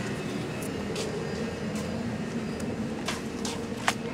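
Steady low machine hum of shop equipment, with a few brief rustles and a sharp click near the end.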